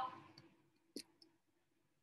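Near silence with a few small clicks: one sharp click about a second in, and two fainter ticks around it.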